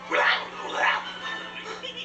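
An animated dog character's voice giving two short barks, heard through a television's speaker over a faint steady hum.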